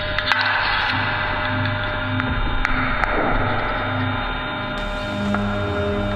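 Experimental electroacoustic drone music from sound sculptures, laptop and treated saxophones: many sustained tones over a low note pulsing about twice a second, with a hissing wash and a few scattered clicks. Near the end, new held notes come in.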